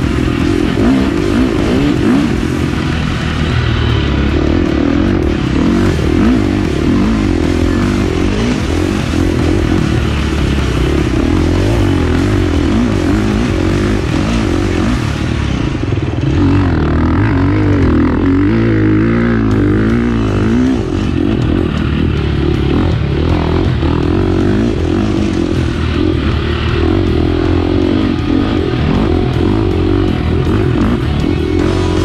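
Husqvarna dirt bike engine being ridden hard, its revs rising and falling continuously, with music playing over it.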